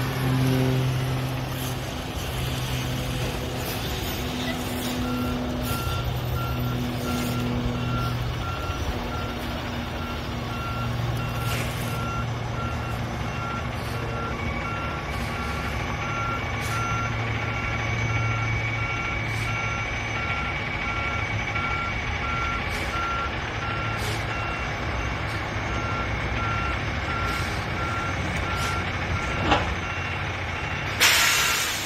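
Roll-off truck reversing slowly with its diesel engine running, the engine hum swelling and easing. From about five seconds in, its backup alarm beeps steadily, about once a second.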